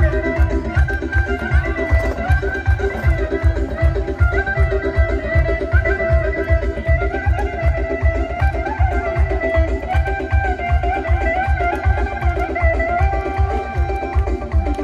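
Traditional Uzbek folk music: a fast, steady drum beat under a long, wavering melody line.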